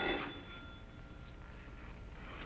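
A voice trails off in the first moment, then only the faint steady hiss and low hum of an old television soundtrack.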